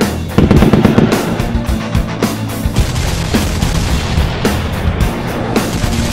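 Rapid automatic rifle fire, a sound effect of many shots in quick succession, over loud background music with a steady low drone.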